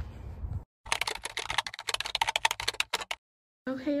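A rapid, irregular run of sharp clicks lasting about two seconds, cut off abruptly at both ends.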